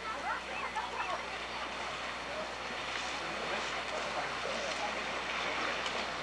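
River passenger cruise boat passing close by, its engine and the rush of its wash growing gradually louder. Voices call out over it in the first second or so and near the end.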